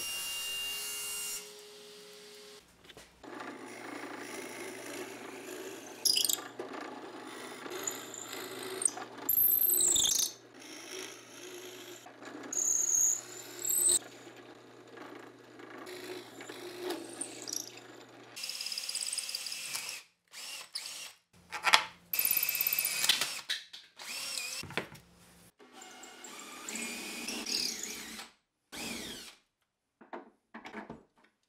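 Benchtop drill press running with a steady hum as its bit bores into a wooden lock block, with short high squeals as the bit cuts. In the last third, shorter bursts of tool and handling noise are broken by brief silences.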